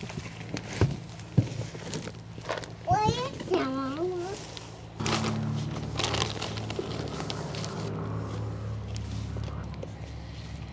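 Hands working potting soil around a plant's root ball in a plastic tote, with scattered knocks and rustles and a brief wordless voice about three seconds in. About halfway through the sound changes to a steady low hum with the rustle of a plastic soil bag being handled.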